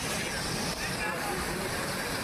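Fast-flowing floodwater of a swollen stream rushing steadily, with faint human voices mixed in.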